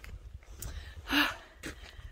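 A woman's short breathy laugh about a second in, over a low rumble of wind on the microphone.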